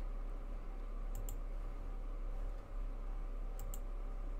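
Two quick double clicks of a computer mouse, one about a second in and one near the end, over a steady low electrical hum.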